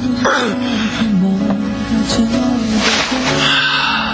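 A man crying out and sobbing without words over sad background music, with two loud breathy cries, one just after the start and one about three seconds in.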